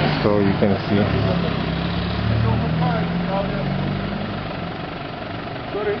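A vehicle engine idling close by, a steady low hum, with faint voices in the background.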